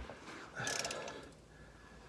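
A soft knock, then a brief scrape and rustle as a plastic drain tub is pushed across the cardboard-covered floor under the car.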